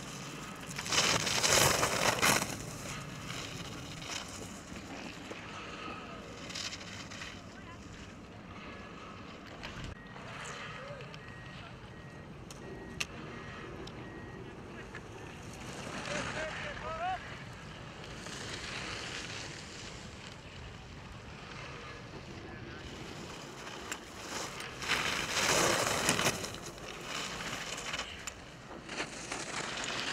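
Ski edges carving and scraping on hard-packed snow as giant slalom racers turn through the gates close by, in two loud rushing surges, about a second in and again about 25 seconds in, with a fainter one in between. Wind on the microphone fills the gaps.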